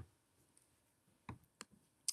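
Near silence: room tone, broken by two faint short clicks about a third of a second apart, a little past the middle.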